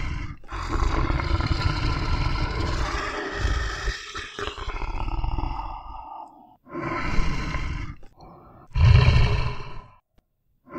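Deep animal roaring and growling: one long rough call lasting about six seconds, then two shorter calls near the end, the last of them the loudest.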